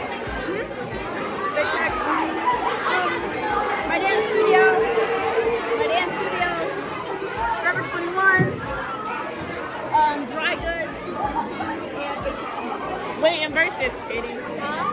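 Lunchtime crowd chatter in a school cafeteria: many voices talking over one another at once, with no single speaker standing out, in a large hall.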